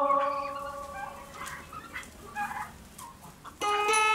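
A mixed flock of turkeys, geese and chickens calling, with short scattered clucks and calls through the middle. Background music fades out in the first second, and new music comes in loudly near the end.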